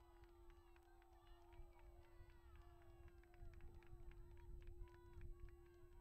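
Distant shouting from several football players at once, overlapping calls that mostly fall in pitch, over low wind rumble on the microphone and a steady hum, with scattered short clicks. The shouting follows a goal that levels the match.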